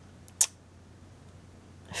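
Quiet room with one brief, sharp, high-pitched click about half a second in.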